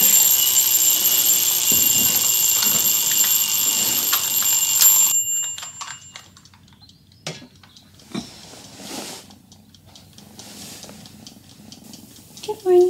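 An alarm clock ringing, a loud high-pitched steady ring that cuts off suddenly about five seconds in; then quiet rustling of bed covers and a few faint clicks.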